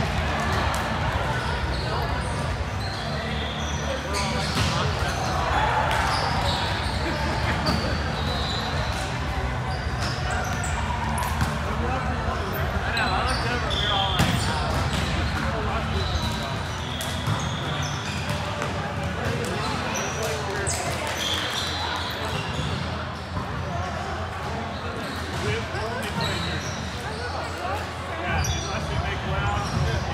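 Busy indoor volleyball gym: balls bouncing and being hit on the hard court floor across several courts, with players' indistinct chatter and calls echoing in the hall. A few short, high squeaks of shoes on the court stand out now and then.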